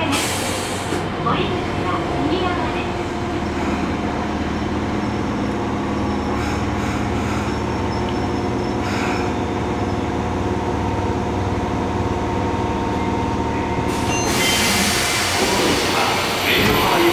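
Interior of a Fukuoka City Subway 1000N-series car: a steady hum and whine of its electrical equipment with several level tones. Near the end a sudden loud hiss of air comes in as the doors open.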